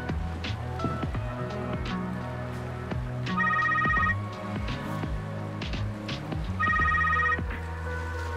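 A mobile phone ringtone: two short trilling rings about three seconds apart, over soft background music.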